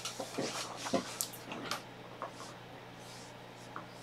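A computer keyboard being handled and shifted on a desk: a scatter of light knocks and rustles, most of them in the first two seconds, with a faint steady hum under them.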